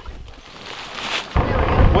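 A short rising hiss, then an abrupt change about a second and a half in to a side-by-side utility vehicle driving, with a steady low rumble and wind buffeting the microphone.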